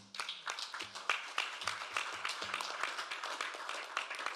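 Audience applause: many hands clapping steadily.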